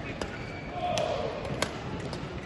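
Badminton rackets striking a feather shuttlecock in a fast warm-up drive rally: a few sharp, short hits, the loudest about one and one and a half seconds in.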